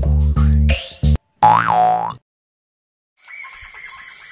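Intro jingle of plucked guitar and bass that stops about a second in, followed by a short cartoon "boing" sound effect that sweeps up and back down in pitch. After about a second of silence, a faint steady background sound comes in near the end.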